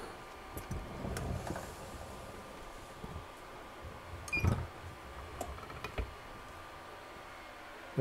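Quiet handling sounds from a Tusy swing-away heat press. Paper rustles as a sheet is laid over the glass, then the upper platen is brought over and clamped down, with a thump about halfway through and a brief high tone at the same moment. A sharp click follows about a second and a half later.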